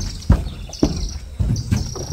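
Several dull thumps and knocks on the wooden floor of a livestock trailer as a calf is carried aboard and set down, steps and hooves landing about every half second. Insects chirp in short repeated high pulses.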